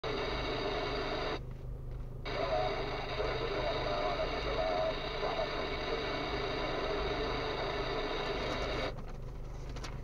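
Car radio playing inside the cabin, breaking off for under a second about a second and a half in and cutting off shortly before the end, over the low steady hum of the car's idling engine.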